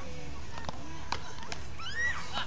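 Beach tennis paddles striking the ball: several sharp pops, the loudest a little after a second in and again about half a second later, over a steady low background rumble.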